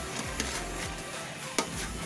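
Background music over a metal spoon scraping and clinking against a metal cooking pot as banana chunks are pushed into the stew, with one sharp clink about one and a half seconds in.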